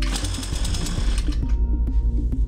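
Starter rope of a McCulloch two-stroke trimmer pulled, cranking the engine with a dense, noisy whir that stops abruptly about one and a half seconds in, followed by a few separate clicks, over background music.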